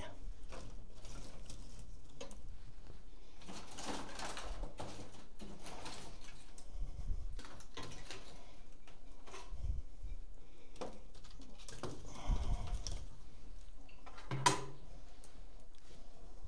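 Wood fire crackling under a paella pan, with knocks and scrapes as the burning logs are shifted with a long iron tool, over a steady low hum. A brief pitched call sounds near the end.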